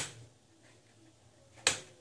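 Two sharp clicks, about a second and a half apart, as the back of a small photo frame is pressed and snapped into place by hand.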